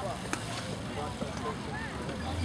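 Faint distant voices of people talking and calling, over a steady background noise, with one sharp click about a third of a second in.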